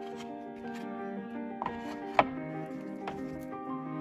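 Instrumental background music with sustained notes, over the light clicks of oracle cards being flipped by hand. One sharp card snap about two seconds in is the loudest sound.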